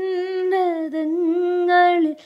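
A woman singing a slow devotional chant in long, steady held notes, with a slight waver in pitch. The voice breaks off just at the end.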